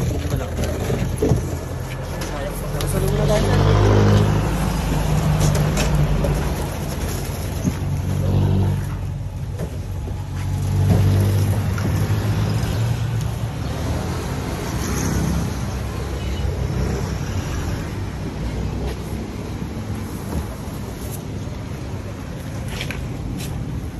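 A motor vehicle engine running close by, its low hum swelling and easing several times.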